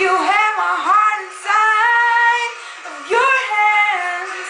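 A young woman singing solo. There are three phrases, each about a second long, with the pitch sliding up and down between held notes.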